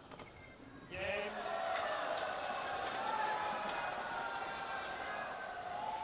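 Arena crowd jeering in disapproval as a lopsided badminton match ends: a sudden, loud outcry of many voices rises about a second in and holds.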